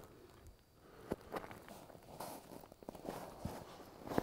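Boots scuffing and crunching on snow-covered ice in irregular, faint steps, with a few rustles.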